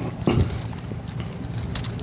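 Bible pages turning and rustling in scattered short crackles, with one dull thump about a third of a second in, over a low steady hum.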